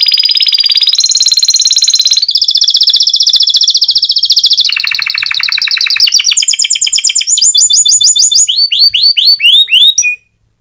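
Domestic canary singing a continuous song of fast rolling trills, each held for a second or so before switching to a new trill, with quick falling sweeps near the end; the song cuts off suddenly at the end.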